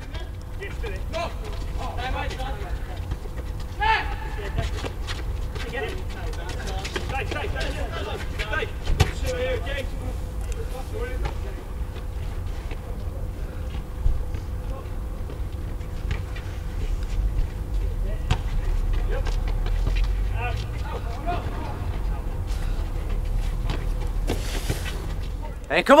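Outdoor ambience of an amateur football match: faint, distant shouts and calls from the players over a steady low rumble, with a few scattered knocks.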